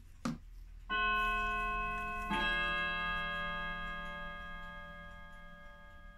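Two bell-like chime notes, the second about a second and a half after the first, ringing on and slowly fading for several seconds before stopping abruptly; a short click comes just before them.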